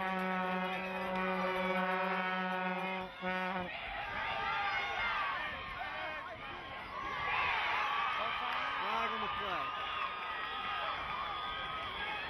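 A long, steady horn note held for about four seconds, with a brief break just before it ends. Then spectators shout and cheer as the play develops.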